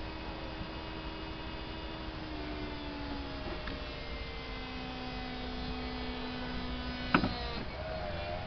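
Electric-hydraulic soft-top mechanism of a Vauxhall Astra Bertone convertible running with a steady hum as the fabric roof folds back; the pitch drops slightly a little after two seconds. A loud clunk sounds about seven seconds in.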